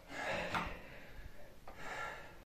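A person breathing heavily, with two loud, noisy breaths: one just after the start and one near the end. It is the laboured breathing of someone whose mouth is burning from an extremely hot chili chip.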